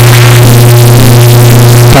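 A man humming one long, steady, low closed-mouth 'hmm', held on a single pitch and cutting off just before the end. The audio is blown out, loud and distorted.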